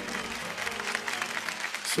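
Studio audience applauding, with faint background music underneath.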